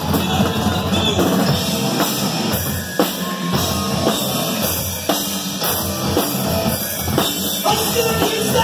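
Live rock band playing an instrumental stretch of the song, with the drum kit loud in the mix and electric guitar, and sharp accented hits every couple of seconds.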